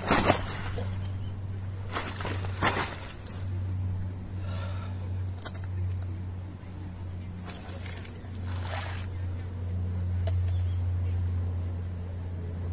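Brief rustling and thumping bursts from a large grass carp being held and shifted on a padded unhooking mat, about four of them, the first right at the start. Under them runs a steady low hum.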